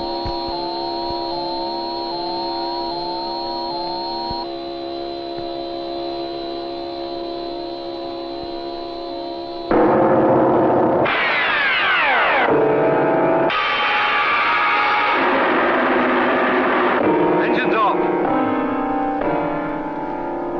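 Electronic science-fiction film score: steady held tones with a short rising blip repeating about every two-thirds of a second. Just under ten seconds in, it gives way abruptly to a louder wash of dense electronic tones with falling sweeps.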